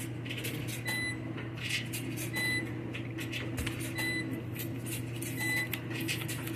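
A deck of tarot cards being shuffled and handled by hand, in quick irregular papery strokes. A short high tone recurs about every second and a half, over a steady low hum.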